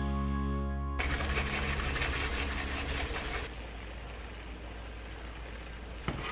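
A held chord of soft music ends about a second in, giving way to a pan of risotto sizzling, louder at first and quieter in the second half.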